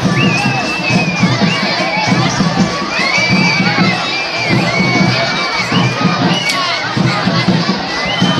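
A large crowd shouting and cheering, with long shrill high-pitched calls held about a second each rising above the din, clearest near the start and again around the middle.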